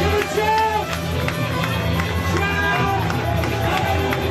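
Live gospel worship music: a praise team of women singing into microphones over a band with a steady bass line, guitar and percussion.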